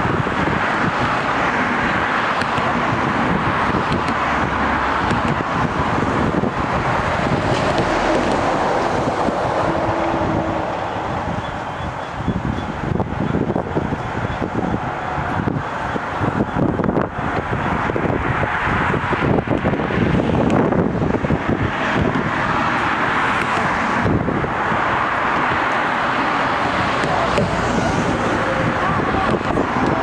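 Wind buffeting the microphone over a steady low rumble of vehicles, with no distinct clanks or horns standing out.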